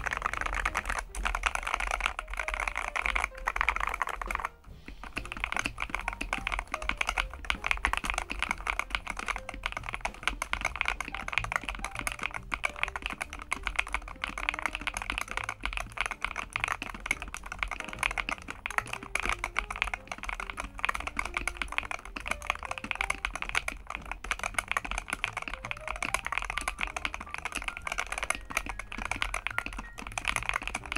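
Fast continuous typing on a Varmilo Minilo75 HE 75% keyboard with magnetic Hall-effect linear switches, an aluminium plate in a tray mount and PBT keycaps: a dense run of key clacks, with a brief pause about four and a half seconds in.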